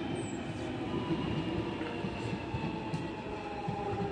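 London Underground 1996 Stock Jubilee line train pulling away and receding, a steady motor whine sinking slowly in pitch over the rumble of wheels on the track.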